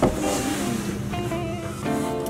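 Background music: a few held notes that step in pitch, likely guitar.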